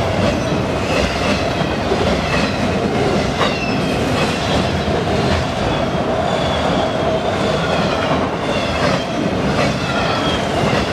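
Autorack freight cars of a CSX train rolling past at speed, a steady loud rumble of steel wheels on rail with clicks over the rail joints and brief high wheel squeals.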